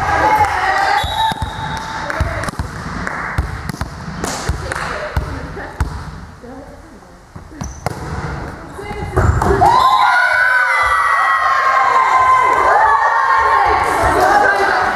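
Volleyball play in a sports hall: scattered sharp knocks of the ball being hit and bouncing on the hard floor amid footsteps and voices, with a heavy thud a little after nine seconds. About ten seconds in, several players burst into loud shouting and cheering as they celebrate the point.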